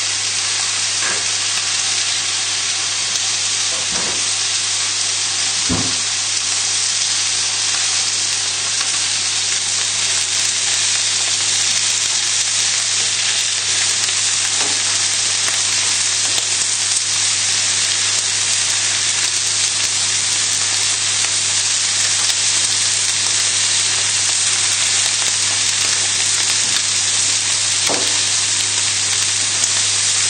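Two thin steaks, oiled but laid in a dry, smoking-hot frying pan, searing with a loud, steady sizzle as the meat seals against the pan, with a few faint pops.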